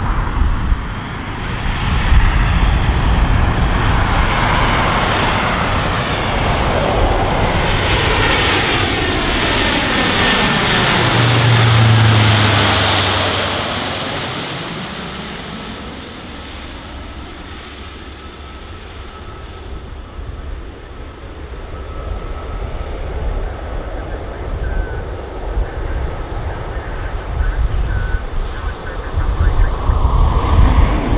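Lockheed Martin C-130J Hercules's four turboprop engines and six-bladed propellers droning as the aircraft passes low overhead, loudest about twelve seconds in as the pitch sweeps downward, then fading as it moves away. A rougher, fluctuating rumble builds again over the last several seconds.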